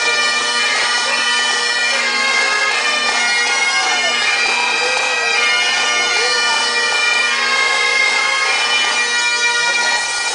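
Several Great Highland bagpipes playing together: steady drones held under the chanters' melody, with no break.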